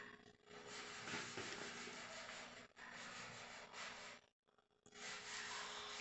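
Faint rubbing and scraping of hands working loose, gritty potting mix (cactus substrate with carbonized rice hulls and peat-based Carolina Soil) around a plant's base in a pot. The sound cuts out completely for about half a second roughly two-thirds of the way through.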